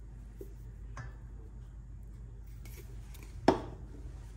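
Ground cinnamon being added to a stainless steel bowl of flour: a faint click about a second in, then one sharp tap near the end, over a faint steady low hum.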